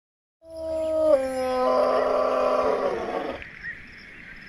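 A California sea lion calling: one long call of about three seconds that steps down in pitch about a second in, turns rough, then stops.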